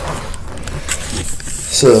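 Rustling and handling noise close to the microphone as a person shifts position, an even scuffing with low rumble, followed near the end by a short spoken word.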